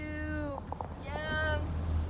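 A person's voice making two drawn-out, high, meow-like calls, each falling slightly in pitch, about a second apart. Under them is the steady low rumble of the motorboat.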